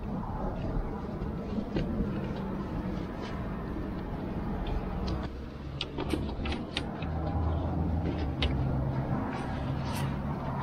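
A motor vehicle engine running steadily in the background, its pitch shifting about halfway through. Over it come a few sharp clicks and knocks, most of them a little past halfway, as a soft motorcycle pannier's mounting fittings are set against a metal luggage rack.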